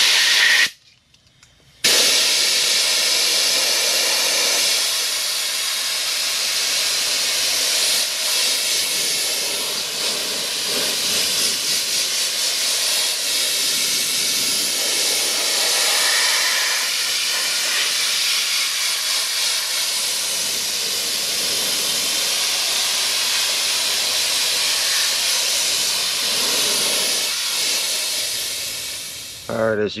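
Compressed-air blow gun hissing as it blows water off a wet-sanded paint panel to dry it. A short blast comes first, then about a second of pause, then one long steady blast that wavers a little and stops just before the end.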